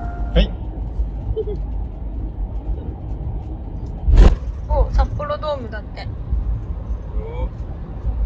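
Steady low road and engine rumble inside the cab of a moving truck-based camper van, with a sharp thump about four seconds in and brief bits of voice after it.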